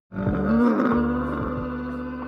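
A camel's loud, drawn-out groaning bellow, starting suddenly and held on.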